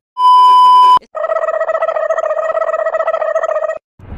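A high, steady test-card beep lasting about a second, stopping abruptly. After a brief break, a lower, buzzing electronic tone with a rapid flutter runs for nearly three seconds, then cuts off.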